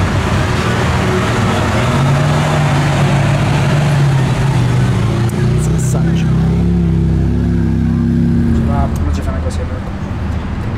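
Lamborghini Aventador's V12 running at low revs as the car creeps past, a steady deep drone that is loudest in the middle and eases off near the end.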